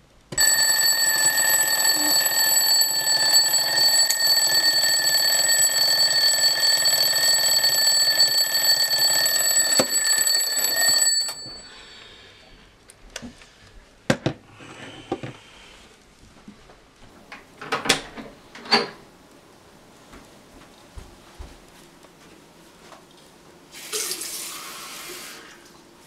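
An electronic alarm clock sounds a loud, steady alarm tone for about eleven seconds, then cuts off. Scattered small knocks and handling sounds follow, and near the end a tap runs briefly.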